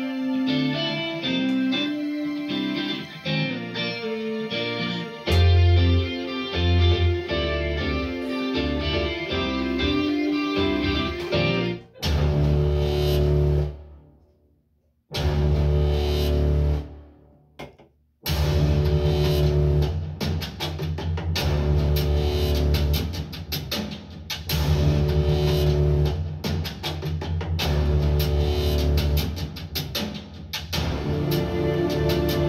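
Copyright-free music samples played through a pair of Dayton B652 bookshelf speakers. A guitar-led instrumental plays first. About twelve seconds in it switches to a bass-heavy track with a steady beat, broken by two brief drops to near silence.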